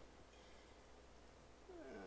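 Near silence: room tone with a faint steady low hum. Near the end a man's drawn-out 'uh' begins, falling in pitch.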